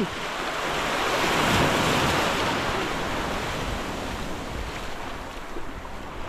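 Surf washing up the sand at the water's edge, a rushing swell that is loudest about two seconds in and slowly fades away.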